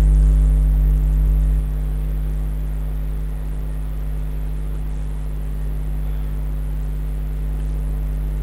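Steady low electrical hum with a faint buzz, like mains hum picked up in a computer recording setup. It drops a little in level about one and a half seconds in.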